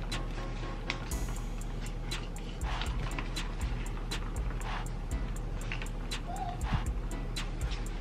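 Background music, with the light ticking and scraping of a stir stick against the sides of a plastic cup as glitter is stirred into epoxy resin.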